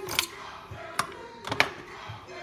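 Handheld manual crank can opener being worked around the rim of a steel can, giving a few sharp, irregular clicks.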